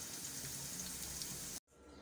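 Ridge gourd curry sizzling in oil in a covered kadhai: a steady hiss with fine crackles at the stage where the oil has separated from the masala. It cuts off abruptly about one and a half seconds in.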